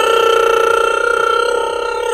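A woman singing one long, loud note, held steady in pitch.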